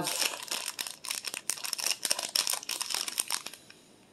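Clear plastic bag crinkling and rustling as it is pulled from a box and handled, a dense run of crackles that stops about three and a half seconds in.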